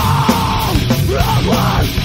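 A 1998 metalcore recording playing at full tilt: heavily distorted guitars and driving drums under a screamed vocal.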